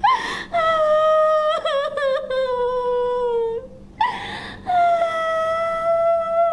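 A woman crying aloud: two long, drawn-out wails, each starting with a short catch of the voice, the first sliding slowly down in pitch.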